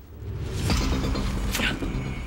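Dramatic film score and sound design swelling in: a low, creaking, mechanical drone rises quickly, and two sharp noisy hits land over it, one just under a second in and one about a second and a half in.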